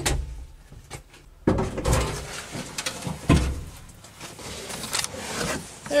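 Knocks, bumps and scuffling from someone moving around and handling wiring inside a car's trunk, with a few louder thuds about one and a half, two and three seconds in.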